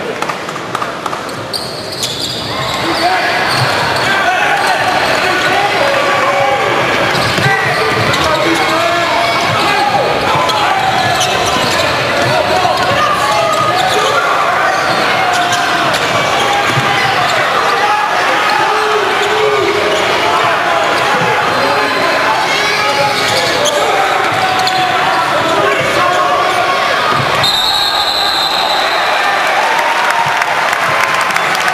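A basketball bouncing on a hardwood court amid a dense wash of arena voices, louder from about two seconds in.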